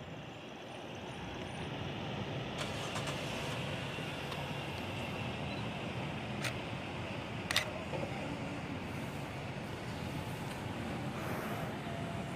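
A car engine running steadily, swelling a little over the first couple of seconds, with two short clicks near the middle.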